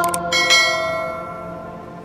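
Two quick mouse-click sounds, then about half a second in a bright bell chime that rings and slowly fades: the stock click-and-notification-bell effect of a subscribe-button animation. It plays over soft background music.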